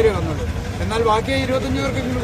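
Men talking in Malayalam in a crowd, over a low steady rumble.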